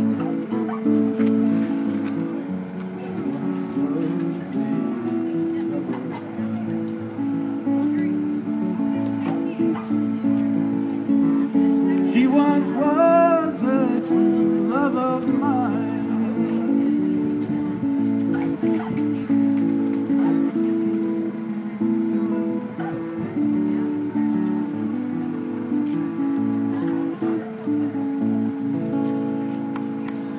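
Acoustic guitar played live, a steady repeating chord pattern carrying on without singing as the song's instrumental close.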